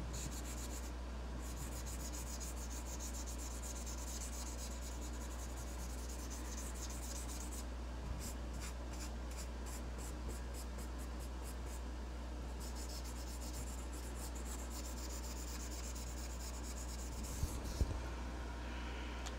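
Ohuhu alcohol marker scratching across paper in long back-and-forth colouring strokes, with short pauses and a run of quicker, separate strokes in the middle. A steady low hum runs underneath.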